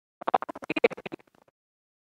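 Stylus writing on the glass screen of an interactive smart board: a quick run of scratchy strokes and taps lasting just over a second.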